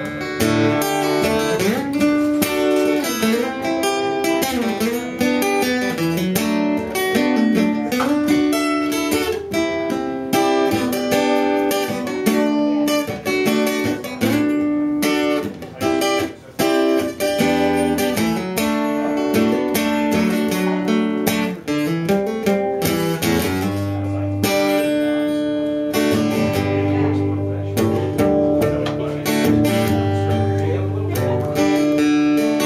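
Steel-string acoustic guitar played solo in an instrumental break, picked melody notes over strummed chords, with one brief drop in volume about halfway through.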